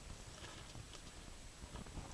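Faint, scattered light taps and handling noise from hands on a plastic water bottle standing in a metal basin.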